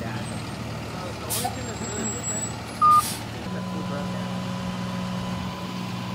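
Flatbed tow truck's engine running as it pulls up, with one short, loud beep about three seconds in. After that the engine settles into a steady hum.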